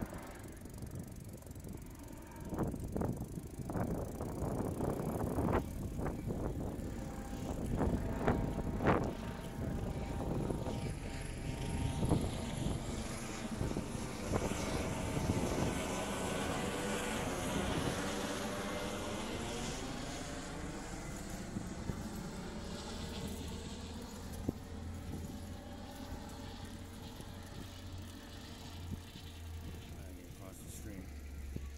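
Helicopter passing overhead: its rotor and engine sound builds through the first half, with a sweeping, wavering pitch pattern in the middle, then fades away. A few sharp knocks sound in the first ten seconds.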